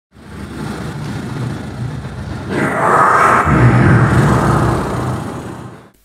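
Opening sound effect: a loud, noisy wash over a low hum that swells about halfway through and fades out just before the end.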